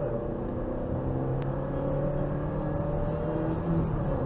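Ford Focus Mk2 1.6 engine heard from inside the cabin, pulling steadily with its pitch slowly rising as the car gains speed, over a bed of road noise.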